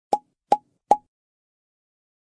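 Three short pop sound effects in quick succession during the first second, evenly spaced, each a brief pitched plop.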